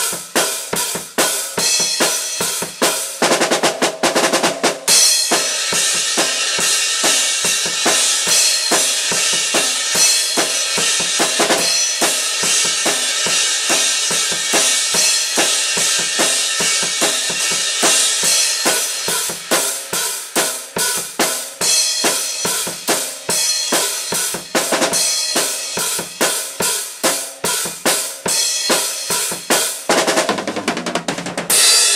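Acoustic drum kit played continuously: bass drum, snare and cymbals. About three seconds in there is a quick run of very fast strokes, and then a steady cymbal wash rides over the beat for much of the rest.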